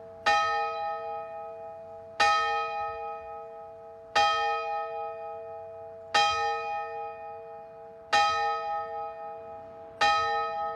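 A single church bell tolling, struck five times at an even pace of about one stroke every two seconds, each stroke ringing on the same note and fading with a slow waver until the next.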